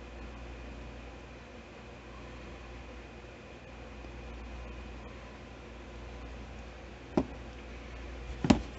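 Steady low room hum, then a single sharp knock about seven seconds in as a plastic paint squeeze bottle is set down on a cardboard board.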